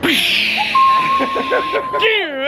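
Excited shrieking and exclaiming from several voices, with one high voice holding a long steady note from about a third of the way in.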